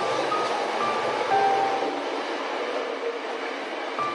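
Slow, sparse piano notes, each held, over a steady even hiss of falling rain.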